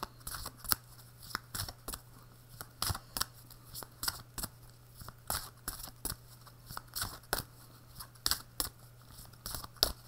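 Tarot deck being shuffled by hand: irregular sharp clicks and snaps of cards slipping against each other, several a second.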